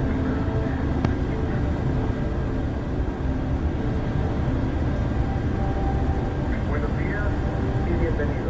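Steady engine and road rumble inside the cabin of an intercity coach moving at highway speed, with faint voices in the background.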